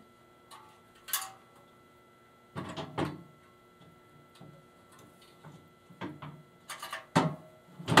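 Knocks and clacks of a slotted air grate floor tile being handled, turned over and set into a raised-floor frame. A few scattered knocks, a pair around three seconds in, and the loudest cluster near the end as the tile goes into place.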